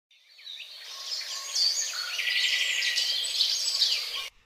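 Birdsong: several birds chirping and trilling at once, with quick rising and falling whistles, fading in over the first second.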